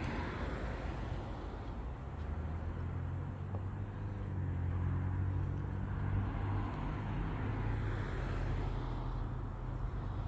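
Low, steady rumble of passing road traffic, swelling a couple of seconds in and easing off near the end.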